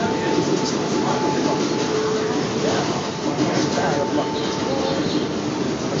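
Subway car running, heard from inside the car: a steady rumble and rush of noise, with a steady whining tone that holds for a few seconds at a time and breaks off.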